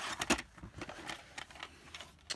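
Plastic VHS cassette and case being handled: light rustling, then a few soft clicks and taps.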